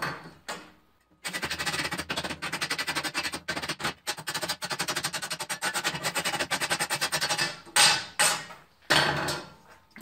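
Rapid metal-on-metal banging, several strikes a second for about six seconds, as caked slag and dross are knocked off a steel plasma-table slat. A few slower, separate strikes follow near the end.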